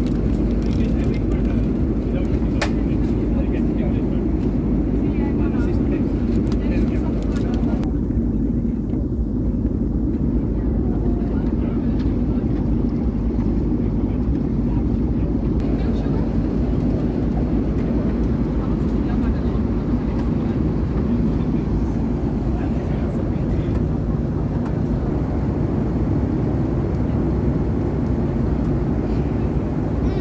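Steady low cabin noise of an Airbus A330-300 airliner in flight: engine and airflow noise heard from inside the passenger cabin. The upper hiss changes slightly about eight seconds in.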